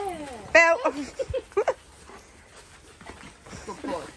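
Alaskan malamute giving a short high-pitched whine about half a second in, followed by a few brief yips and whimpers over the next second, then a lull.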